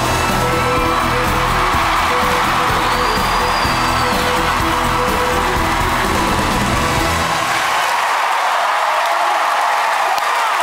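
Music with a strong bass part playing over a cheering, whooping audience; the bass drops away about seven seconds in, leaving mostly the crowd's cheering.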